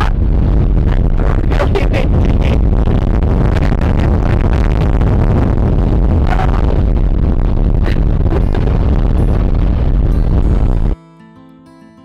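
Strong wind buffeting the microphone, a loud, rough low rumble with a woman's voice faintly buried in it. About 11 seconds in it cuts off suddenly to quiet acoustic guitar music.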